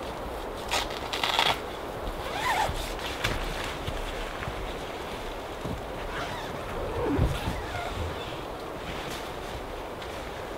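A tent door zipper being run, with the loudest zip about a second in, followed by scattered rustles and scrapes of tent nylon.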